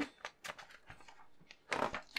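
Glossy magazine pages being turned by hand: faint paper rustles and light touches, with a louder rustle of a page turning near the end.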